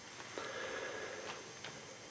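A few faint clicks from a scoped bolt-action rifle being handled at its action, over low room noise.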